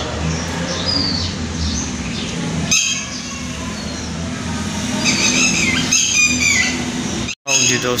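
Birds chirping and calling in short high bursts over a steady low hum. The sound drops out for a moment shortly before the end.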